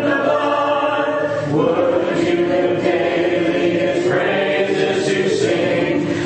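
Church congregation singing a hymn together a cappella, mixed voices with no instruments. It changes chord about a second and a half in and holds one long chord until just before the end.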